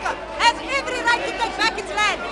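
Speech: a woman speaking in a raised voice into a microphone, with other people talking around her.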